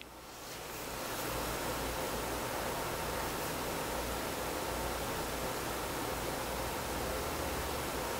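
Steady hiss of room tone and microphone noise that swells in over the first second and then holds level, with a faint low hum underneath.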